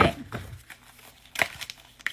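Tarot cards being handled as one is drawn from the deck: a few short papery clicks and rustles, the sharpest about a second and a half in.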